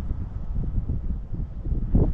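Wind buffeting the microphone: an uneven, gusty low rumble, with a single sharp click just before the end.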